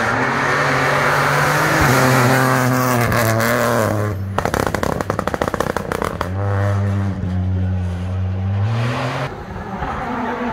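Rally car engine running at high revs, its pitch stepping with gear changes as it comes up the road. In the middle there are a couple of seconds of rapid crackling. The engine then pulls again and its pitch drops near the end.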